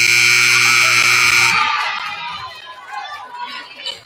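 Gym scoreboard horn giving a steady buzz at the end of the fourth quarter. It cuts off about a second and a half in, leaving crowd voices and chatter.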